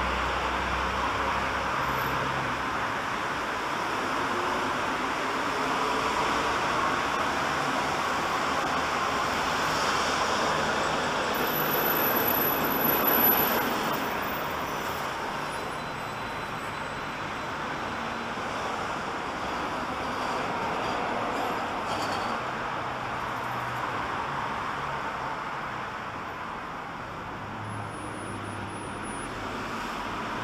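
Steady road traffic noise from a street running beside the station, a continuous hum of passing cars that swells slightly about thirteen seconds in.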